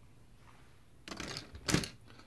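Plastic Lego pieces clicking and rattling as a section of a brick model is pulled off by hand: a short clatter about a second in, then one sharp click near the end.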